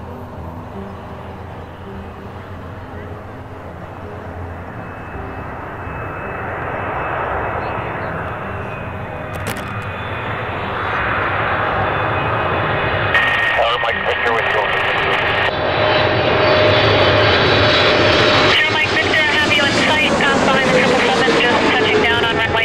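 Boeing 777 on final approach, its GE90 turbofans growing steadily louder as it nears and passes low overhead. A high whine joins the roar about halfway through, and the pitch drops as the jet goes by near the end.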